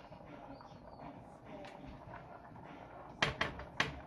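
Quiet kitchen background, then a quick run of sharp knocks and clacks about three seconds in as a pan lid is handled with an oven mitt over a skillet.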